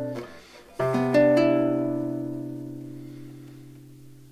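Nylon-string classical guitar: a chord fades out, then a little under a second in a close-voiced chord is plucked, its notes sounding in quick succession, and it rings on, slowly dying away.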